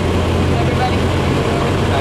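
Steady low engine rumble of street traffic, with faint voices of people nearby.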